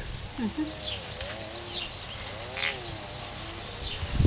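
A person humming softly, a few long, wavering notes that glide up and down in pitch.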